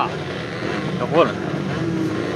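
Racing kart engines running together in a steady drone while the karts wait to start. A short voice is heard about a second in.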